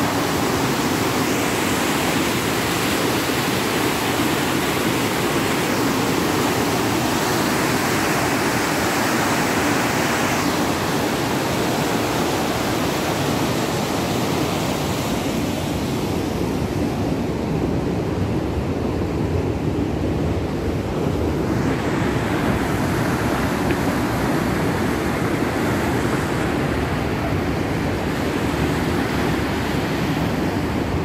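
Steady rushing of fast, turbulent water in a large concrete-lined canal running full, with the treble thinning for a few seconds in the middle.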